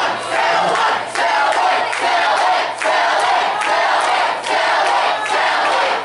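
A large audience of young people shouting together in a rhythmic chant, the many voices swelling about once a second.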